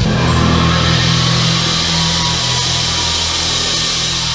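Live rock band holding a loud sustained final chord. Electric bass notes ring low under a dense wash of cymbals, fading slightly toward the end.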